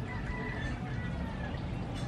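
Faint drawn-out bird calls in the background: a few held high notes, each about half a second long and falling slightly, over a steady low rumble.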